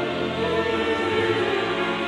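Background choral music: voices holding slow, sustained chords, with the low part moving to a new note about a second in.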